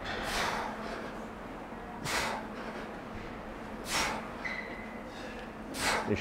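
A man breathing out hard in time with fast barbell squat reps: four sharp breaths about two seconds apart, one per rep.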